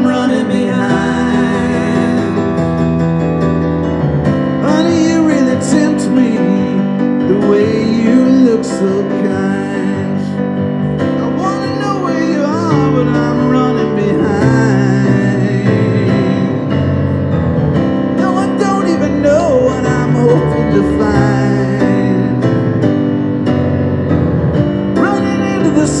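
Live music: a keyboard playing chords, with a voice singing over it through a PA.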